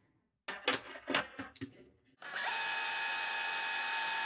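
Fast-forward sound effect: a steady whirring hiss with a few high held tones, starting about two seconds in after some short scraps of sped-up sound.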